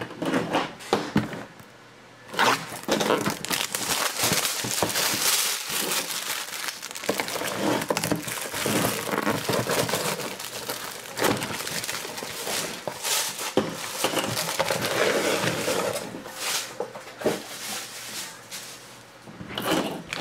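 Cardboard trading-card box being torn open by hand: tape peeled off and cardboard ripping and rustling in irregular bursts. The sound starts about two seconds in and dies down to scattered handling clicks for the last few seconds.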